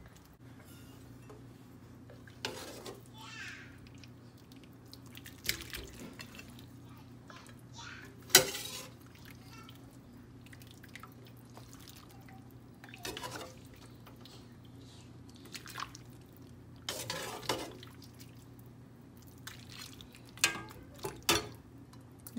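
A metal ladle clinks irregularly against a wok and a stainless steel pot as chicken pieces are scooped out of broth, with broth dripping. The loudest clink comes about eight seconds in, over a steady low hum.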